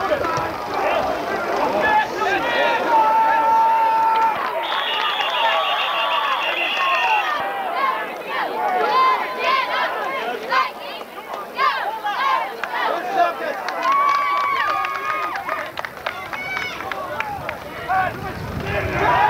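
Crowd at a football game: many voices shouting and cheering at once, overlapping without any single clear speaker. A shrill, held high note sounds for about three seconds, starting about four and a half seconds in.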